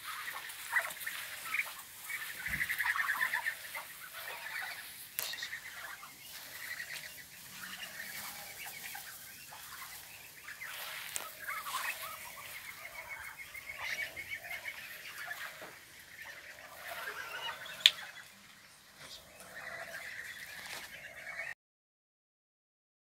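A flock of Muscovy ducks calling: many overlapping rapid, pulsing calls, with one sharp click about three-quarters of the way through. The sound cuts off suddenly just before the end.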